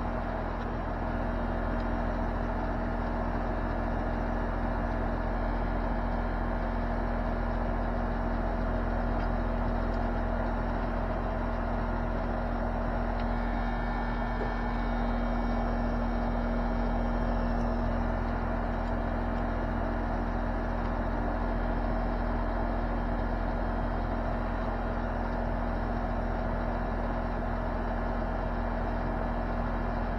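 Central air conditioner's outdoor condenser unit running: a steady hum of the compressor and condenser fan, with a low tone and a higher tone held evenly throughout.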